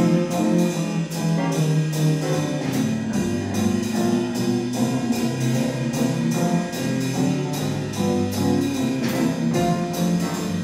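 Big-band jazz played live: a horn section of saxophones, trumpets and trombones over piano, guitar and drums, with the cymbals keeping a steady swing beat.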